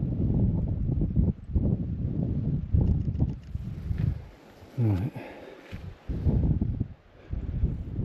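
Wind rumbling on a GoPro Media Mod microphone fitted with a furry windscreen, with irregular low thumps of footsteps and handling as the camera is moved about.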